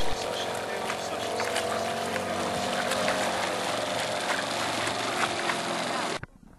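Small outboard motor on an inflatable dinghy running steadily as the dinghy motors away.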